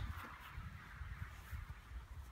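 Low, uneven wind rumble on the microphone over a faint outdoor background.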